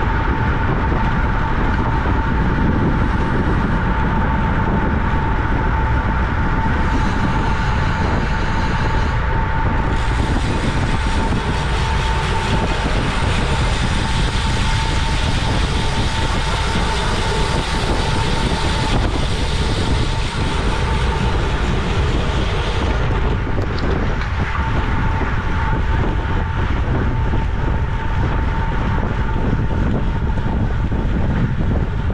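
Wind rushing over a bike-mounted camera's microphone on a road bike moving at race speed, a steady rumbling noise with a thin constant whistle running through it.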